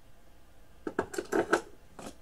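Paper bag rustling and crinkling, with a quick run of sharp clicks, as C-cell batteries are pulled out of it. The handling noise comes in a short burst about a second in.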